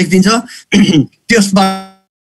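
A man speaking, his last syllable drawn out into a long held vowel that cuts off at the end.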